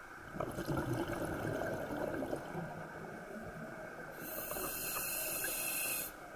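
A scuba diver breathing through a regulator. A bubbling exhale starts about half a second in and lasts a couple of seconds, then the hiss of an inhale begins about four seconds in.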